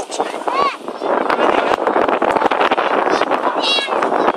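Gulls calling overhead: one call about half a second in and a few higher calls near the end, over a steady rushing noise that starts about a second in.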